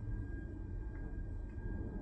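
Steady low hum with a thin, faint high whine from a Wrightbus Electroliner battery-electric double-decker's systems as it powers down, with a couple of faint ticks about a second in.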